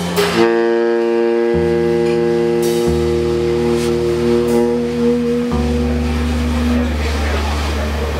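Live free-jazz playing: saxophones hold long, sustained notes over double bass notes that change pitch every second or two, with a few cymbal strokes from the drum kit. The saxophones' held note stops near the end, leaving the bass under a noisy wash.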